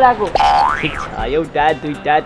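Cartoon-style 'boing' sound effect: a short pitched tone that rises steeply, then falls away, about half a second in.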